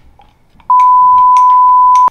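A loud censor bleep: one steady pure 1 kHz tone that starts about two-thirds of a second in and holds without change, edited over a spoken reply to blank it out.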